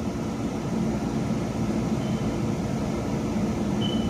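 Steady mechanical hum with a low drone and an even hiss, unchanging throughout, like a fan or an engine running.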